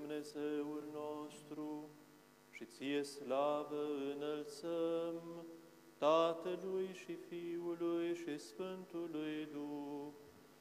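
Orthodox liturgical chant: a sung melody with long held notes in slow phrases, pausing briefly twice.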